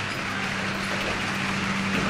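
Steady low hum with an even rushing noise, unchanging throughout.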